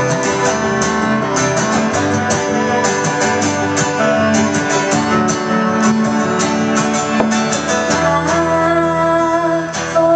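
Two acoustic guitars strumming together with a cello holding long low notes: live acoustic folk music.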